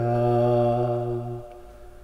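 Male voice chanting a Pali Buddhist protection verse (pirith), holding the final vowel of the line on one steady low pitch, which fades out about a second and a half in.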